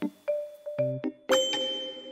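Playful background music made of short plucked notes, then a bell-like ding a little over a second in that keeps ringing.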